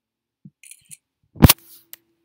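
A single sharp, loud knock close to the microphone about one and a half seconds in, after a few faint clicks, followed by a faint steady hum.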